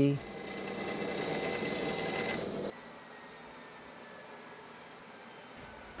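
Bandsaw running and cutting through a hardwood plank, a steady sawing noise with a thin high whine. It cuts off suddenly about two and a half seconds in, leaving only quiet room tone.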